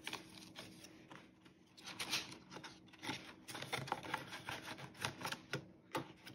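Paper banknotes and cash envelopes being handled in a ring budget binder: soft paper rustling with scattered light clicks and taps.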